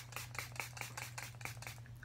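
Pump mist spray bottle of tea tree toner water being pumped rapidly at a face, a quick run of short sprays, several a second.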